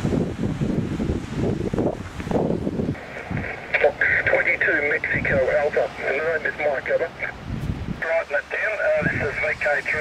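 Wind buffeting the microphone for about the first three seconds, then a voice on a 2 m SSB contact coming through the speaker of a Yaesu FT-817ND transceiver, thin and tinny.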